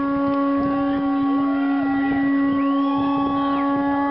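A horn blown in one long, steady, low note, with crowd voices calling out in rising and falling whoops over it.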